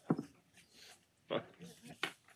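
A few short, quiet bursts of stifled laughter from a person near the microphone.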